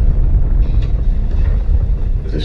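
Deep, steady low rumble with no clear pitch: the sound design of a large explosion in a film trailer.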